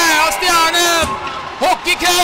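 A man's excited voice calling out in long drawn-out sounds, then shorter bits of speech, over a faint haze of arena noise.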